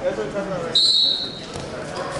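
Indistinct voices shouting in a gym around a wrestling bout, with a short, high, steady squeal about three-quarters of a second in.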